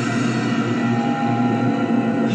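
A steady low drone with several held tones from a TV drama soundtrack, heard through a television speaker and recorded off the set.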